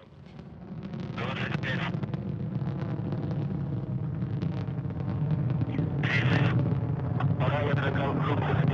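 Low, steady rumble of the Soyuz booster's engines, heard from the launch pad as the rocket climbs away. It swells over the first second, then holds.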